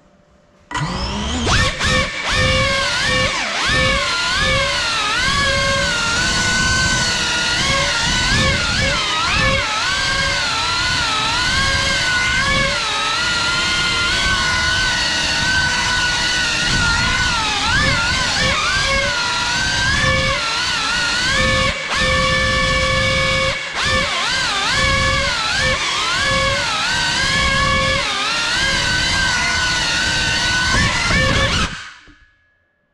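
Motors and ducted 3.5-inch propellers of a GEPRC CineLog35 cinewhoop drone whining in flight, the pitch rising and falling constantly with the throttle over a rushing prop wash. The sound spins up suddenly about a second in. It drops out briefly twice about three-quarters of the way through.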